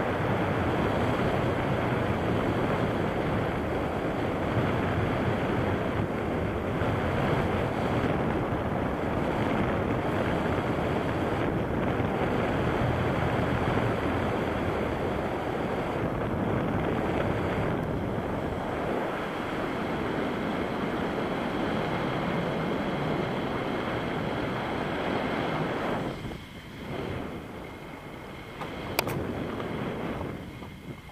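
Wind rushing over the camera microphone of a paraglider in flight: a steady, loud rushing noise that drops away abruptly near the end, followed by a single sharp click.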